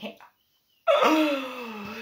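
A woman's voice: after a brief dropout to silence, one long drawn-out breathy exclamation that glides down in pitch.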